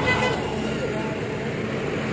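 Roadside traffic noise, with a motorbike passing close by at the start.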